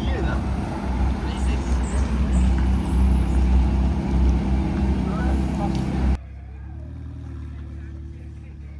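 Supercar engines idling in a queue: a steady low rumble with voices faintly behind it. A little after six seconds the sound cuts off abruptly to a much quieter background.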